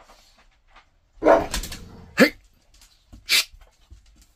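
A dog barking twice: a longer bark about a second in, then a short one a second later. A brief sharp noise follows near the end.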